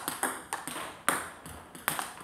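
Table tennis ball clicking off the paddles and bouncing on the table in a light rally, with sharp, evenly spaced clicks about three a second. These are topspin balls being blocked back with almost no force.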